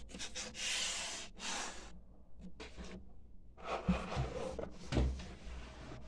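Rubbing and wiping a small handmade figure by hand: two stretches of scratchy rubbing, one at the start and one from the middle of the clip, with a couple of light knocks near the end.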